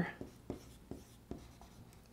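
Dry-erase marker writing on a whiteboard: a few short taps and strokes, about one every half second, as numbers and letters are written.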